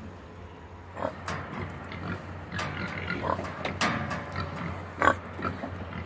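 Berkshire boar grunting several times, starting about a second in, with a few short sharp sounds among the grunts.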